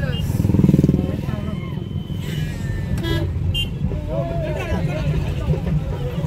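Motorcycle engine passing close, loudest about a second in, amid road traffic and people's voices.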